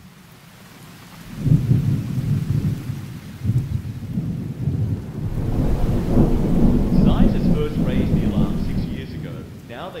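Thunder rumbling with rain falling; the rumble comes in about a second in and swells and fades in waves.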